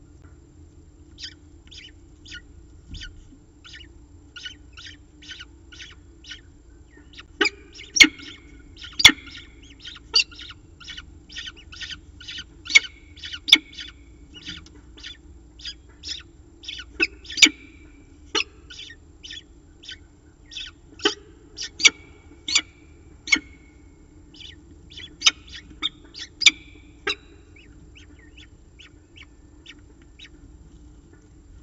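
Downy peregrine falcon chick begging at a feeding: a rapid, continuous series of thin, high chirps, about two or three a second. They grow louder about seven seconds in, with several sharper, louder calls scattered through the rest.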